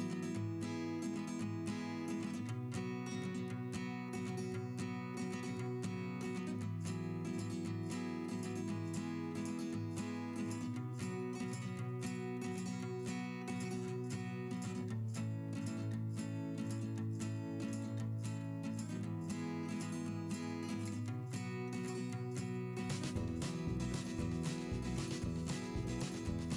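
Background music: acoustic guitar strumming steady chords, with a deeper bass part joining near the end.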